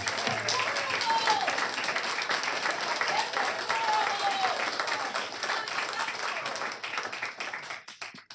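Audience applauding, many hands clapping, with a few voices calling out over it; the applause dies away near the end.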